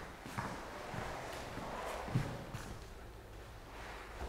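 Faint, irregular footsteps of a person in sneakers walking across a bare concrete floor.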